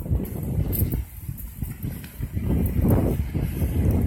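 Low, irregular rumble of wind buffeting a phone's microphone while walking outdoors.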